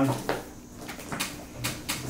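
A cardboard product box being handled and lifted off a wooden tabletop: a few light taps and clicks.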